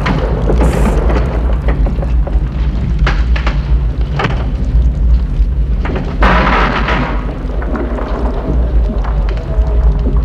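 A deep, continuous rumble with bursts of crumbling rock and falling debris, as the rock shaft caves in, over dramatic music. The longest spill of debris comes a little past the middle.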